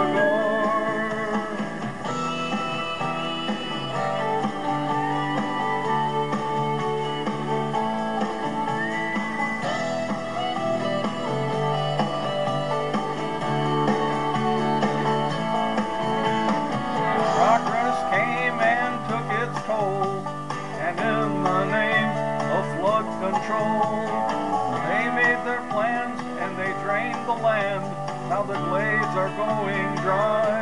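Instrumental break of a country song: guitars and band playing with no vocal line. From about halfway through, a wavering lead melody rises above the band.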